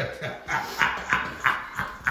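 A man gasping and panting in about six quick, breathy breaths, a few each second, in pain from the burn of an extremely hot chip.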